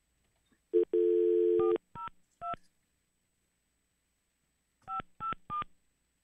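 Telephone dial tone for about a second, then touch-tone keypad beeps as a number is dialled: three digits, a pause of about two seconds, then three more.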